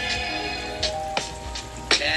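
Background music over an outro: held notes with a few sharp hits.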